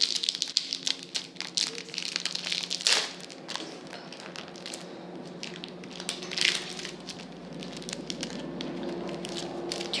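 Foil wrapper of a Match Attax football card pack crinkling and crackling as it is torn open by hand, busiest in the first three seconds and then in short bursts. A steady low hum runs underneath.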